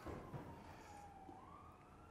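A faint siren wailing, its pitch sliding down over about a second and then rising again, over otherwise near-silent room tone.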